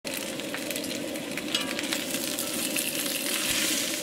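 Bacon sizzling and crackling in a cast iron skillet, a steady frying sound with many small pops.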